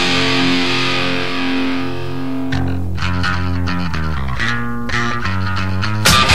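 Heavy punk/metal band recording: a distorted electric guitar chord rings out while the cymbal wash fades away. About two and a half seconds in, a riff of separate picked guitar notes starts over low notes.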